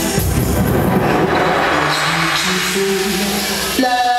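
Live dub reggae played loud over a club PA: a noisy wash over the bass and held notes, changing abruptly to clearer sustained tones just before the end.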